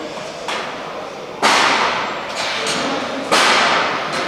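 Four sharp knocks from metal store shelving being assembled, about a second apart, the second and fourth the loudest, each echoing away in a large, bare hall.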